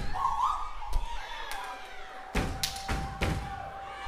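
Step team stepping on a stage: about six sharp stomps and slaps, irregularly spaced, with a short shout near the start.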